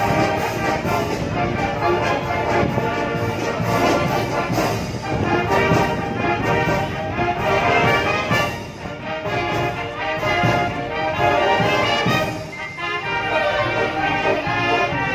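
Youth brass marching band playing live, with trombones and sousaphones over bass drum, dipping briefly between phrases near the end.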